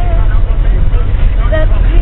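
Steady low rumble of a moving coach bus's engine and road noise, with a held sung note ending just at the start and brief snatches of voice near the end.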